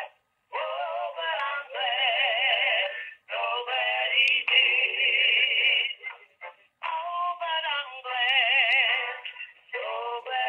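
A song with wavering, vibrato-heavy singing playing over a cordless phone's speakerphone, thin with no bass as sound over a phone line is. It comes in phrases broken by short pauses, about three seconds in and again around six to seven seconds.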